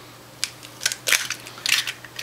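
An eggshell being cracked and pulled apart by hand: a few short, sharp cracks and clicks scattered through the moment.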